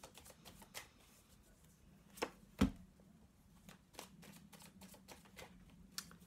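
Deck of tarot cards being shuffled by hand: a faint run of quick card clicks and flicks, with a louder knock about two and a half seconds in.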